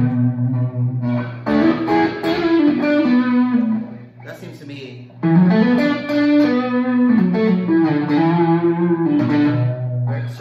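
Neblina Songwriter hollow-body electric guitar played through an amplifier: single-note lead lines on the neck pickup with the treble rolled back, notes bent and held. The playing drops away briefly about four seconds in, then picks up again.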